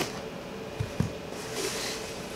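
Corrugated cardboard shipping box being handled after cutting, with two soft knocks about a second in and a light cardboard rustle near the end.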